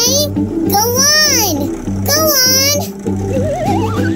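Bouncy cartoon background music with a steady beat. Over it, a high squeaky cartoon voice gives three short calls that swoop up and down in pitch. Near the end, a wobbling whistle effect rises in pitch as the toy digger's bucket lifts.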